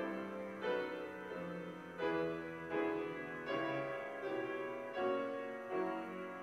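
Slow, quiet piano music. A new note or chord is struck about every three-quarters of a second and fades before the next.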